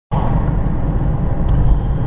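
Steady road and engine noise heard inside a moving car's cabin, mostly a low rumble, with a faint click about one and a half seconds in.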